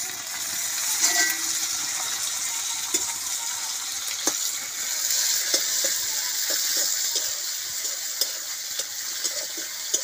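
Food sizzling in hot oil in a black wok over a wood fire, louder for a moment about a second in as food is dropped in. A metal ladle then stirs it, clicking and scraping against the wok now and then.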